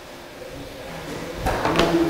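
Microphone handling noise as a handheld microphone is fitted onto its stand, picked up by the microphone itself: quiet at first, then rubbing and a few sharp knocks about one and a half seconds in.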